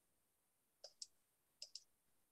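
Faint computer mouse clicks: two quick pairs of clicks, about a second in and again towards the end, over near silence.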